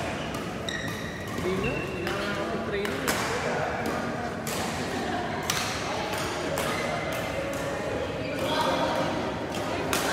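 Badminton rackets striking a shuttlecock in a rally, sharp hits about once a second, with athletic shoes squeaking on the sports-hall floor. The hall is echoing, with voices in the background.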